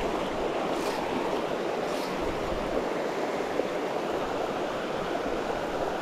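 Small rocky creek running over shallow riffles: a steady, even wash of flowing water.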